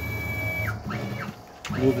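NEMA 23 stepper motors driving the table of a Grizzly G0704 CNC mill in rapid moves at 140 inches per minute: a steady high whine that falls away as the move stops a little under a second in, then a short whine rising and falling with a brief second move, and another rising just before the end. The table is carrying a heavy fixture plate without stalling or missing steps.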